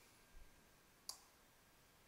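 Near silence with a single sharp keyboard click about a second in, the Enter keystroke that submits the job, preceded by a faint low bump.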